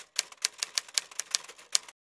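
Typewriter keys clacking in a rapid, slightly uneven run of about seven strokes a second, used as a transition sound effect, stopping abruptly at the end.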